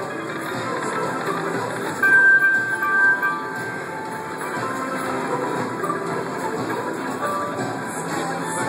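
Dragon's Vault video slot machine playing its free-spin bonus music and reel sounds as the reels spin and stop. About two seconds in a louder chiming tone rings for about a second, as the spin lands a small win.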